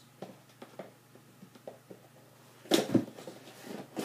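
A cardboard box being handled and turned over, with faint scrapes and light taps, then a louder knock a little under three seconds in.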